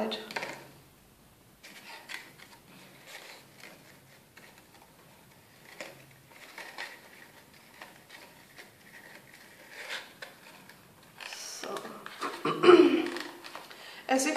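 Faint rustling and small taps of paper and ribbon as a short red ribbon is tied into a bow around the end of a paper party cracker. A brief murmured voice comes in near the end.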